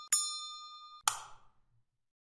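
A synthesized bell-like chime sounding one clear ding at the same pitch as the chimes before it, fading away, then a short noisy crash about a second in that dies out within half a second.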